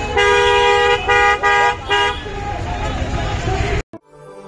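Vehicle horn honking four times in quick succession, the first blast the longest, over the hubbub of a crowd.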